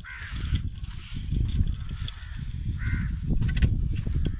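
Crows cawing a few times, short harsh calls, over a loud low rumble of wind buffeting the microphone.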